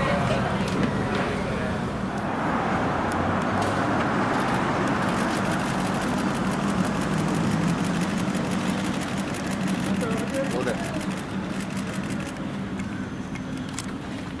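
Steady street traffic noise with a low, even engine hum, and scattered indistinct voices.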